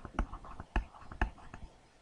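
Several sharp clicks, about half a second apart, as keys on an on-screen graphing-calculator emulator are pressed with a mouse or tablet pen, under faint muttering.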